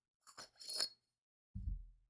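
Metal clinking and scraping as a part is taken off a metal lightsaber hilt, with the sharpest clink just under a second in. A dull low thump follows near the end.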